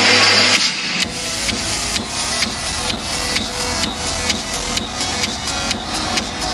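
Electronic dance music played live over a concert sound system. A sustained synth chord with bass cuts off about half a second in. A steady beat of sharp percussive hits follows, a little over two a second.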